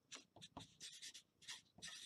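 Artline 90 felt-tip marker writing on paper: a quick run of short, faint scratching strokes.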